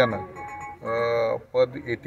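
A man speaking in Marathi, with one long, steady drawn-out vowel about a second in.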